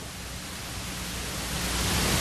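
Steady background hiss of the room and recording, with a low hum beneath it, slowly growing louder.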